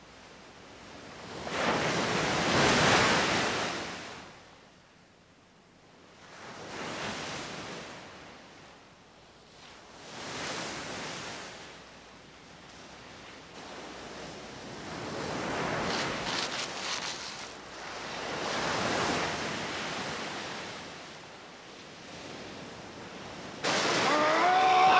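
Sea surf breaking on a beach, rising and falling in about five slow surges, the first the loudest. A sharp cry starts right at the end.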